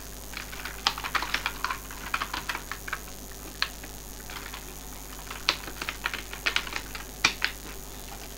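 Computer keyboard typing: quick runs of keystrokes, with a pause of about two seconds in the middle before another run.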